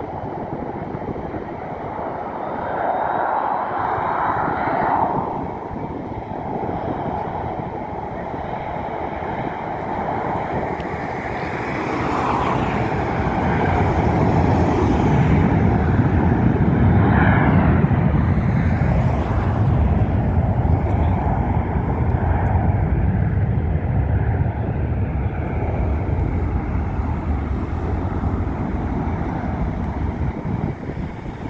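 Jet airliner engines, from the Emirates Airbus A380 on the runway, heard over the road noise of a moving car; the engine noise grows louder and deeper from about twelve seconds in.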